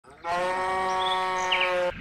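A farm animal's call, one long steady note of about a second and a half, laid over a shot of toy livestock as a sound effect.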